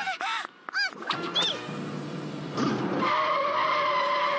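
A fire engine drives up and brakes, with a steady squeal of brakes or tyres in the second half as it stops, over soundtrack music. A quick run of wavering cartoon sound effects comes in the first second.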